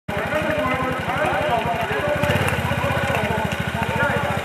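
Quad bike (ATV) engine idling with a steady, rapid putter, with voices talking over it.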